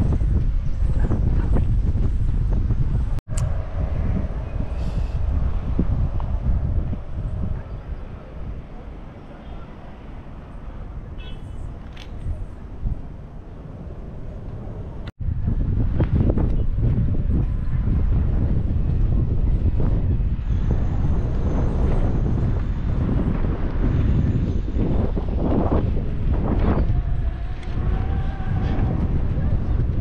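Wind buffeting the camera microphone with a loud, low rumble. It eases to a quieter stretch of outdoor background for several seconds in the middle, then comes back as strongly, with abrupt breaks between the sections.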